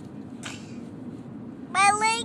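A child's loud, high-pitched, whiny vocal sound near the end, slightly rising in pitch, after a short breath about half a second in, over the steady low rumble of a car cabin.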